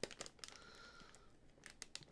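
Faint crinkling and clicking of a popcorn bag being handled as someone struggles to pull it open.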